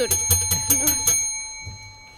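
A bell ringing with rapid repeated strikes, about six a second, that stop about a second in and then ring out briefly: a debate time bell signalling that the speaker's time is up.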